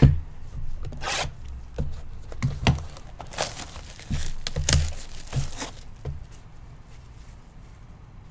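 Plastic shrink-wrap being torn and crinkled off a sealed trading card box, after a knock as the box is picked up. Irregular rips and crackles run until about six seconds in, then only soft handling of the box.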